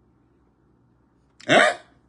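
Near silence, then a man's short, loud spoken interjection "hein" about a second and a half in.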